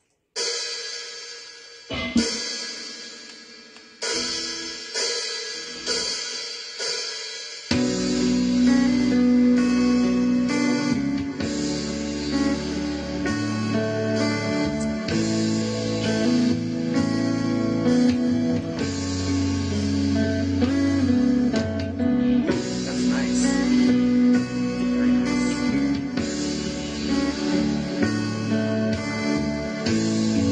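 Electric guitar improvising over an intense, dreamy ballad backing track in F sharp minor. The track opens with a few ringing chords, one every second or two, and then the full band with drums and bass comes in about eight seconds in.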